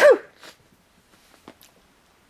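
The loud end of a man's sneeze, a voiced burst that stops a moment in, followed by a couple of faint small clicks.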